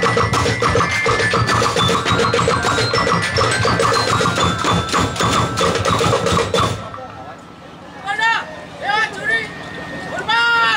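Drumblek percussion band playing a fast, dense rhythm on drums made from plastic barrels, tin cans and bamboo, with short ringing pitched notes over it; the playing stops suddenly about seven seconds in. After a short lull a voice calls out twice.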